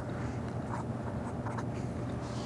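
Felt-tip marker writing on paper: a run of short, faint scratching strokes as an equation is written out by hand, over a steady low hum.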